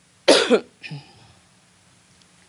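A woman's quick double cough close to a handheld microphone, followed about a second in by a softer, shorter sound.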